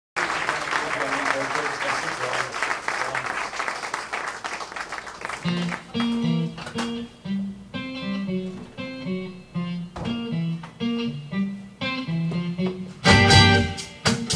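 Audience applause for the first five seconds or so, then an acoustic guitar picking out a rhythmic intro with clear separate notes, with a louder burst of playing near the end.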